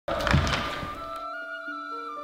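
Background music opening with a deep thud, followed by sustained held notes.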